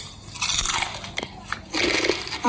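Close-up crunching of crispy fried potato-strip snacks (kentang mustofa) being bitten and chewed, with a few sharp crackles. The crisp plastic snack bag being handled rustles along with it.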